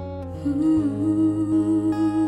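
A woman humming a long held note with a slight waver, over fingerpicked acoustic guitar with a capo.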